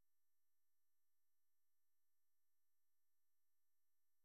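Near silence: an essentially empty, digitally quiet track.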